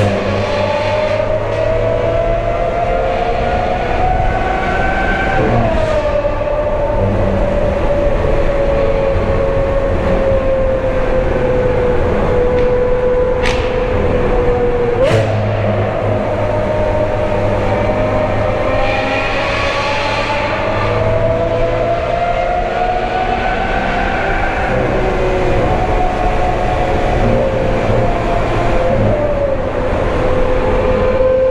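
Lamborghini Aventador SV Roadster's V12 engine with a Brilliant aftermarket exhaust, heard from the open cabin while it drives through a tunnel, the echo filling the sound. The engine note rises and falls slowly, dips about five seconds in and jumps up sharply around the middle, with two sharp clicks just before and at that jump.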